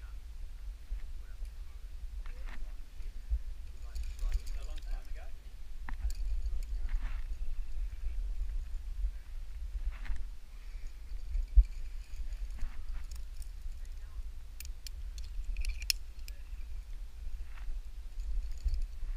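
Helmet-camera sound of a lead climb: a steady low rumble on the microphone, with scattered clicks and clinks of carabiners and quickdraws racked on the harness and one sharper knock partway through.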